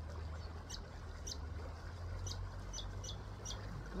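A small bird chirping: about six short, high, falling chirps at uneven spacing, over a steady low rumble.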